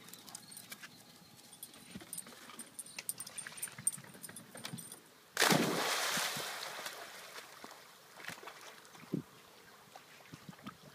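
A German shorthaired pointer landing in a pond after a dock dive: a sudden loud splash about five seconds in, with the spray hissing and falling back onto the water and fading over the next two to three seconds.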